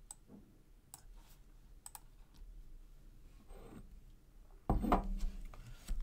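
Scattered light clicks and taps of a computer keyboard, with a louder thump and rustle near the end lasting about a second.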